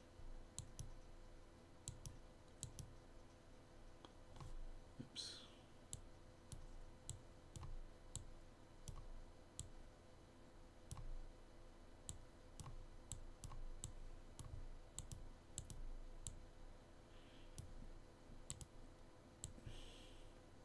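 Faint, irregular computer mouse clicks, roughly one or two a second, over a low steady hum.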